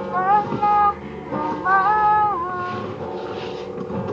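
A boy singing two held, gliding phrases over a strummed acoustic guitar.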